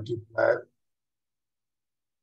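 A man's voice saying "delta y", over within the first second, then silence.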